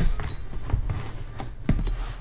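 Machete blade scraping and cutting along the packing tape on a cardboard box, with several sharp knocks as the blade taps the cardboard.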